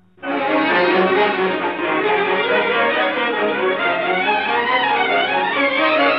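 Old Hindi film-song orchestral introduction starting abruptly a fraction of a second in, led by a section of violins playing wavering, gliding melody lines over a fuller accompaniment.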